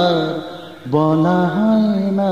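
Bengali film song vocals: a singer holds long notes with vibrato over the music. The note fades out about half a second in, and a new held note starts about a second in.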